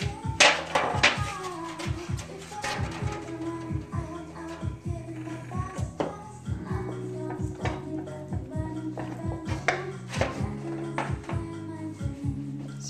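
Background music with held notes, over repeated short knocks and scrapes of a wooden spoon against a stainless steel saucepan as thick chocolate fudge mixture is stirred.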